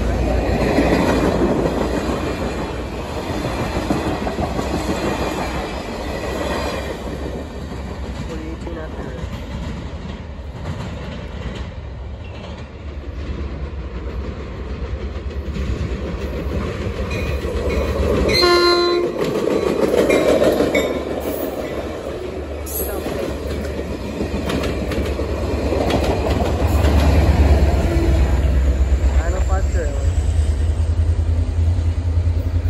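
A Caltrain passenger train rumbling past and away over the rails. Just past the middle comes one short train horn blast, and near the end the rumble of a second, approaching train builds.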